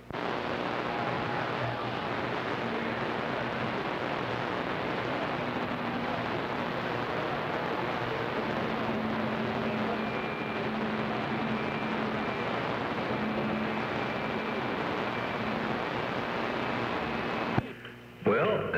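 CB radio receiver hissing with steady band static on channel 6 (27.025 MHz), squelch open between transmissions, with faint steady whistling tones coming and going under the hiss. The static cuts off just before the end.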